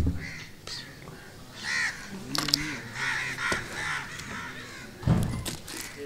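A bird calling several times in quick succession, short harsh calls, with a low thump near the end.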